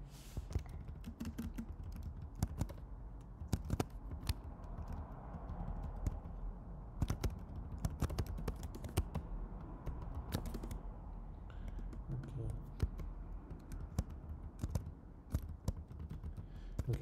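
Typing on a computer keyboard: irregular key clicks at an uneven pace, with short pauses between bursts.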